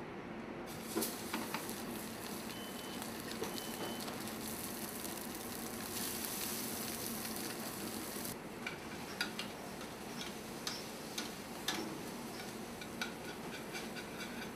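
Fish frying in a hot pan: a steady sizzle that swells for a few seconds in the middle, then settles into scattered spitting pops of oil.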